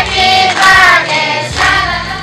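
A group of children singing together in chorus.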